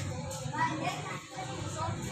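Faint background voices, quieter than the nearby talk, with no distinct key press or beep standing out.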